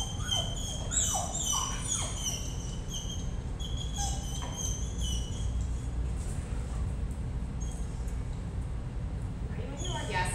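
A pit-bull-type dog whining in a rapid run of short, high-pitched squeaks, with a few lower falling whines in the first two seconds. The whining thins out and stops about six seconds in.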